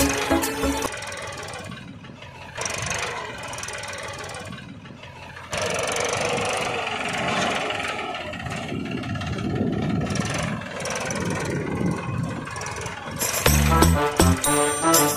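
Homemade mini tractor's small engine running as it drives along a dirt lane, quieter at first and louder from about halfway in. Background music plays briefly at the start and comes back near the end.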